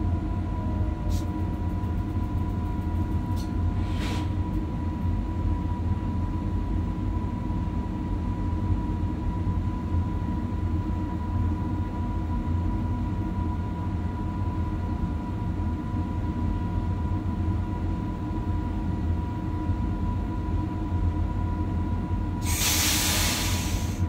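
Electric multiple-unit train standing still, its onboard equipment giving a steady low hum with a constant whine on top, and a few faint clicks in the first few seconds.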